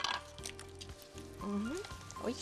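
A sharp tap as an egg is cracked on the rim of a glass mixing bowl, over soft background music with held tones.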